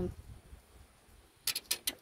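Near quiet with a faint low rumble, then a quick cluster of four or five light clicks and rustles near the end as fingers handle a paper scratch-off ticket on a hard tabletop.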